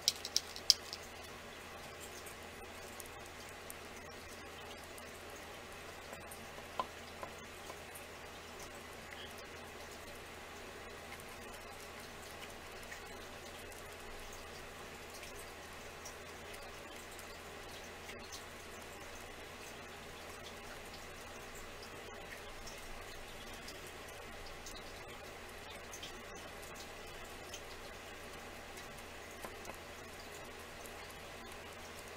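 Quiet room with a steady low hum and faint scattered ticks and taps of paint being dabbed and dragged over a small wooden box, with a few sharper clicks in the first second and one more about seven seconds in.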